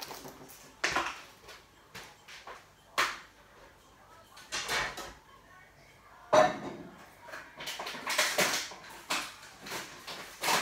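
Kitchen clatter from the next room: dishes, a plastic tub and cupboard doors knocking at the sink while grapes are being washed. Scattered knocks come throughout, with a sharp bang a little after halfway.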